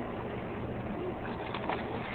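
Steady rush of river water, with a hooked jackfish (northern pike) starting to splash and thrash at the surface near the end as it is reeled in. A couple of faint short whistled notes sound over it.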